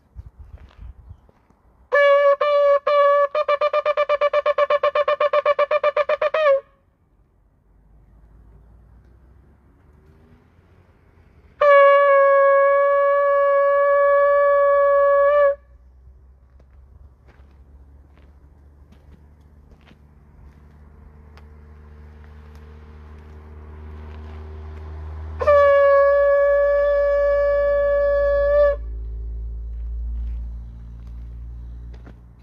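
Shofar blown three times. The first blast, about four seconds long, breaks into rapid wavering pulses; the second and third are single steady notes of three to four seconds, on the same pitch. A low rumble builds under the last blast.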